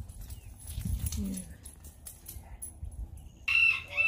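A chicken calling: one short, loud, high-pitched call near the end, over a low rumble.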